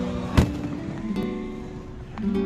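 A firework shell bursts with a sharp bang just under half a second in, followed by a couple of fainter pops about a second in. Acoustic guitar music plays steadily throughout.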